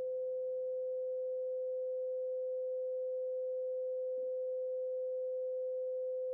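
A steady pure sine tone at one pitch, just above 500 Hz, held without a break: the 528 Hz 'love frequency' tone of a sound-healing frequency track.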